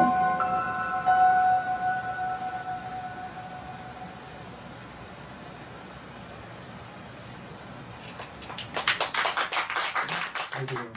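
A held synthesizer chord of a few steady tones fades away over about four seconds at the close of the piece. After a quiet stretch, audience clapping breaks out about eight and a half seconds in.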